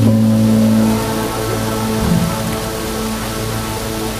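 Live instrumental music built on long held low notes, the upper one dropping out about a second in, over the steady rush of river water.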